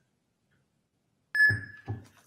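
Electronic poll book tablet giving one steady high beep, about half a second long, as it reads a driver's license barcode, confirming a successful scan. Two low thumps sound with it, and before it there is near silence.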